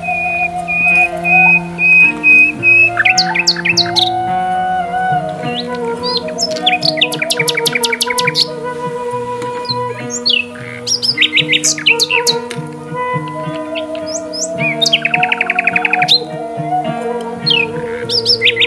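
Soft instrumental background music with long held notes, overlaid with birds chirping in quick repeated trills and sweeping calls.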